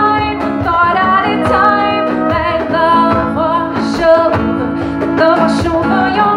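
A live band song: strummed acoustic guitar with singing.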